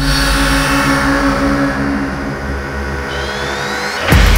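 Electronic sound ident for a record label's logo animation: a sustained low drone with layered held tones and a whooshing sweep that eases down, with a thin rising tone in the last second.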